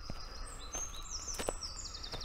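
Small songbird singing: a few high, thin whistled notes, then a fast trill near the end, over faint outdoor background noise.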